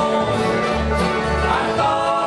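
Live bluegrass band playing: banjo and acoustic guitars picking over an upright bass, with steady strong bass notes.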